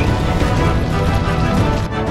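Background music with a steady beat and dense low end.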